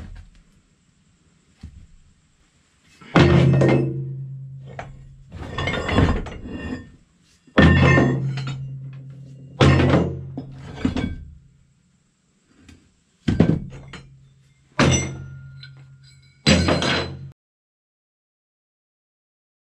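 Steel plate offcuts tossed one at a time into a galvanized metal tub, each landing with a clanging thunk that rings on for a second or so; about eight throws, a few seconds apart.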